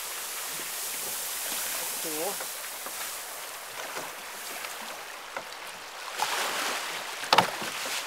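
Steady rushing of river water around a boat, with one sharp knock near the end.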